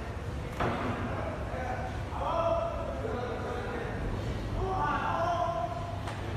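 People talking in a large hall, with one sharp knock or slam about half a second in, over a steady low hum.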